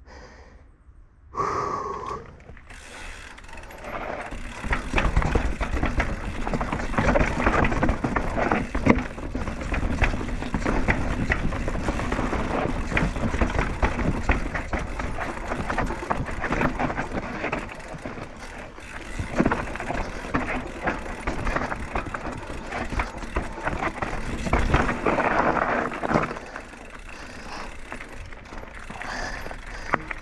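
Downhill mountain bike (a Banshee Scream with a Marzocchi Monster fork) rattling over a rough dirt trail: chain slap, frame and suspension clatter and the rear hub's freewheel ratcheting in a dense run of clicks and knocks. It is quiet for the first couple of seconds and quieter again for the last few.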